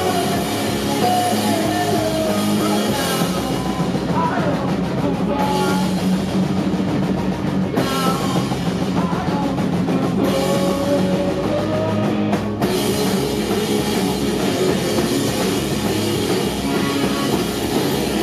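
A pop-punk band playing live at a steady, loud level: distorted electric guitars, bass guitar and drum kit.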